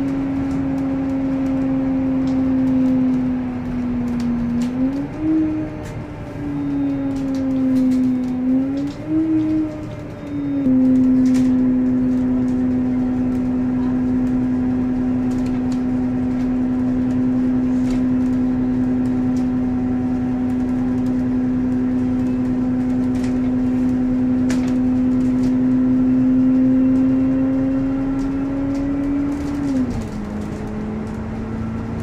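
Cabin drone of a GO Transit bus under way: a loud, steady low hum from the engine and drivetrain. Its pitch rises and falls twice in the first ten seconds, then holds level at speed, with faint clicks and rattles from the cabin.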